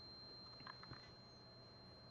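Near silence: room tone with a faint steady high whine, and a few faint short clicks a little under a second in.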